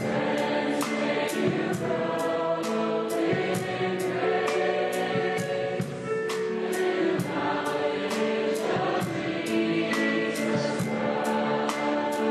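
A choir singing gospel-style music over instrumental accompaniment, with a steady percussion beat ticking about two or three times a second.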